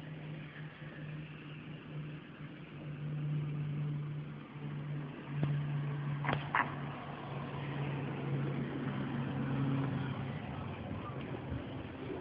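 A car engine running at a steady, low pitch as the car comes along the snowy street, with two short clicks about halfway through.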